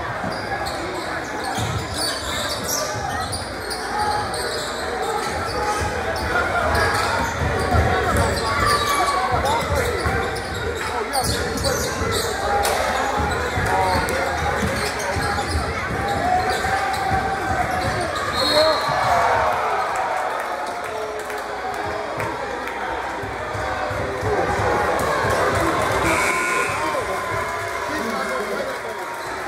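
Basketball dribbled and bouncing on a hardwood gym floor during live play, under the overlapping voices and shouts of spectators in a large gym.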